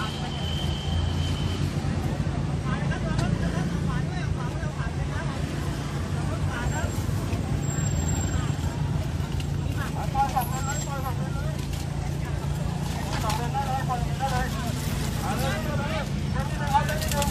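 Steady low hum of a vehicle's engine heard from inside its cabin as it creeps along at walking pace, with scattered voices of people outside breaking in now and then.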